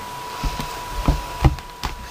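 Hands opening a clear plastic cosmetics bag and handling what is inside: a handful of light knocks and clicks, the loudest about three-quarters of the way through.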